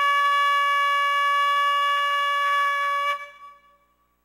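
A ram's-horn shofar blown in one long, steady blast on its upper note, which tapers off and fades out about three seconds in.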